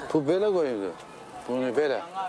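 A person's voice making two drawn-out vocal sounds without words: a long one that rises and then falls in pitch, and a shorter one near the end.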